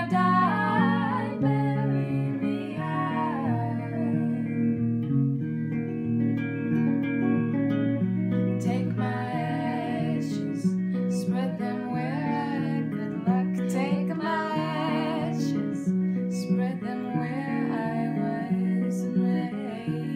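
Two guitars, one acoustic and one electric, strummed and picked together in a slow folk song, with a woman's voice singing over them in stretches.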